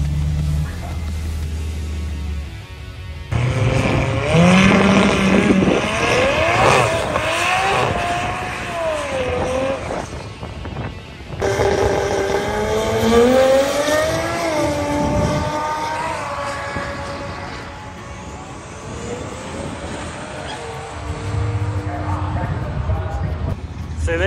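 A car engine idling with a low steady note for the first two seconds, then music with a wavering melody mixed with drag-strip car engine sound.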